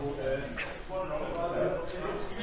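Indistinct voices talking, too unclear to make out words, with a short high tap near the end.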